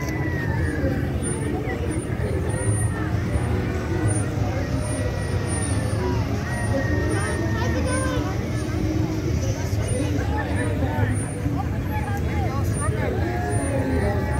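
Engines of slow-moving vehicles rolling past at low speed, a steady low rumble, under the overlapping chatter and calls of a crowd of onlookers.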